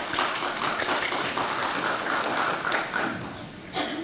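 Audience applauding: many hands clapping in a dense patter that dies away about three seconds in, followed by one short sharp sound near the end.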